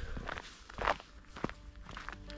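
Footsteps of a person walking along a dirt forest trail, a few separate steps.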